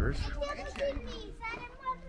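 High-pitched voices of a few young people chatting and calling out, with wind rumbling on the microphone.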